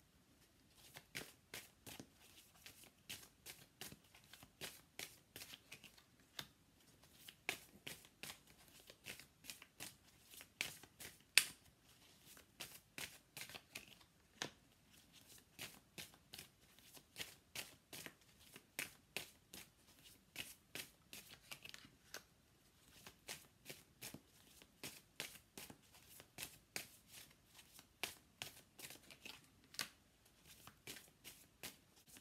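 Tarot cards being drawn off a deck and laid down one by one on a cloth-covered table: a steady run of faint, quick card flicks and slaps, two or three a second, with one louder snap about eleven seconds in.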